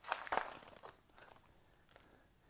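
Shiny foil wrapper of a 2016-17 Panini Prestige basketball card pack crinkling as it is torn open. The crinkle is loudest in the first second and then dies away.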